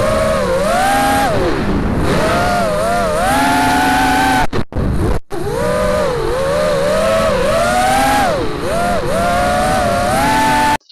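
The brushless motors and propellers of an FPV quadcopter whining, heard from the action camera mounted on the quad, the pitch rising and falling with throttle changes. The sound cuts out twice, briefly, around the middle.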